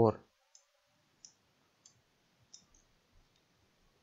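Faint computer mouse clicks, about six short sharp clicks spaced irregularly, as digits are drawn on screen.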